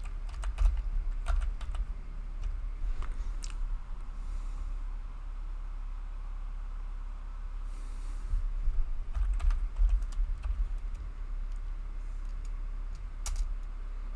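Typing on a computer keyboard: short bursts of key clicks with a pause of a few seconds in the middle, then one louder keystroke near the end as the command is entered.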